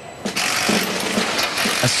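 Handheld power tool running on a truck cab panel on the assembly line: a steady hissing whir that starts about a third of a second in.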